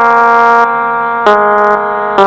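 Casio SA-11 mini electronic keyboard playing a melody one note at a time: one held note, then a lower note struck about a second in and held.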